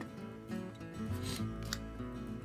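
Soft background music with sustained, guitar-like notes, over a few brief rustles of paper trading cards being slid off the front of a hand.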